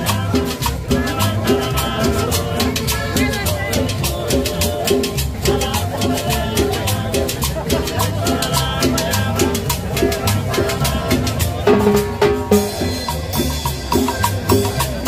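Live cumbia band playing dance music with guitar and hand drums over a steady, even beat.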